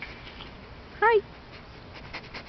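A dog giving one short, high whine about a second in, its pitch rising and then falling.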